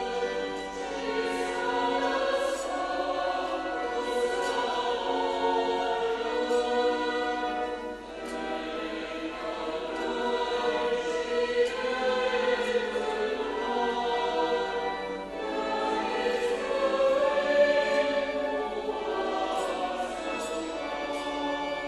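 Church choir singing a hymn in long, sustained phrases, with short breaths between phrases about eight and fifteen seconds in.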